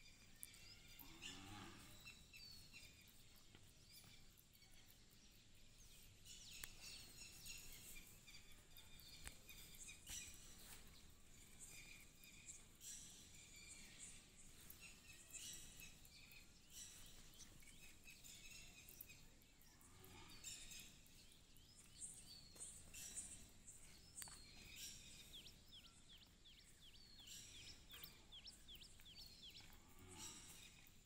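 Near silence with faint, scattered bird chirps, and a faint low moo from the cattle about a second in.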